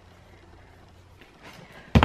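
Quiet room tone with a few faint handling sounds, then a single thump near the end as a cardboard shipping box is set down.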